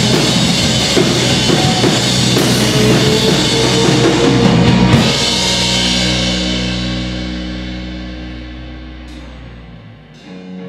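Live rock band, with electric guitars, bass guitar and drum kit, playing loudly. About halfway through they strike one last hit, and the held chord then rings on and slowly fades away.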